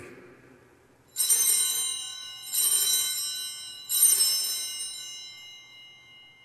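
Altar bell rung three times, about a second and a half apart, each ring starting sharply and dying away slowly. It marks the elevation of the consecrated chalice at Mass.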